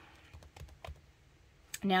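A few faint, short clicks and taps of hands handling the paper pages of an open planner, pressing the spread flat and lifting a page corner.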